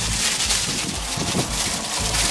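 Wind buffeting the microphone, with the crinkle of a plastic bag being handled.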